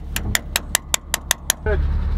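A hammer strikes a steel punch set against an excavator's swing drive gear, with about eight quick, sharp metallic blows at roughly five a second that stop about a second and a half in. It is knocking the drive gears loose from the swivel assembly so the upper structure can turn freely. A low steady engine drone comes up right after the blows stop.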